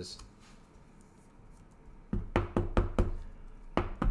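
Hands handling a trading card in a rigid clear plastic holder, giving a quick run of about seven sharp taps and clicks against the table in the second half.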